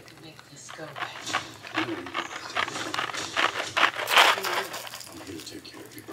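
Plastic wrapping crinkling and a cardboard jelly bean box being handled and opened, a run of irregular crackles.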